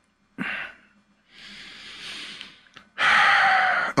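A man breathing audibly close to a microphone: a short sharp intake about half a second in, a longer softer breath out, then a loud heavy sigh in the last second.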